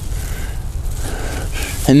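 A young sunflower being pulled up by hand from leaf-mold mulch, with faint rustling of leaves and mulch, over a steady low rumble.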